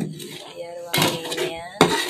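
Metal spatula stirring and scraping in a pan of boiling coconut milk, with a sharp knock against the pan near the end. A voice talks over it.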